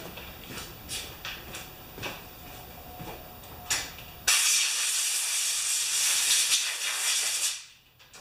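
A few light knocks and clicks, then, a little past four seconds in, a compressed-air blowgun hisses loudly and steadily for about three seconds, blowing out the mower's old air filter, before cutting off sharply near the end.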